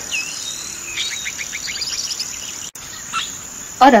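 Outdoor nature ambience of crickets chirping steadily, with a bird giving a quick run of rising chirps about a second in. The sound cuts out for an instant near the three-second mark.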